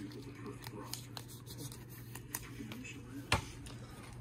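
Faint rustling and small clicks of a trading card and its clear plastic sleeve being handled, with one sharp tap near the end as the card is set down on the playmat, over a low steady hum.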